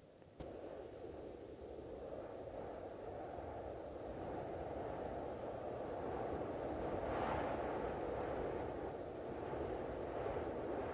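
A steady rushing, rumbling outdoor noise on the open mountainside with no distinct strokes or impacts. It swells a little past the middle.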